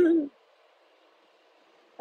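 A woman's voice briefly at the very start, the tail of a spoken word, then near silence with a faint hiss.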